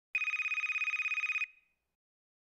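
A telephone ringing: one ring of about a second and a quarter with a fast, rattling trill, dying away quickly when it stops.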